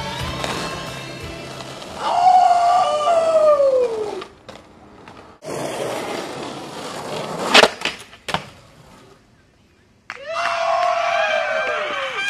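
Skateboard riding on concrete: wheels rolling, sharp clacks of a trick popped and landed about two-thirds of the way through, and two long squeals that fall in pitch, one early and one near the end.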